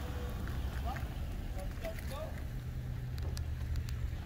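Outdoor background: a steady low rumble with faint distant voices of people talking.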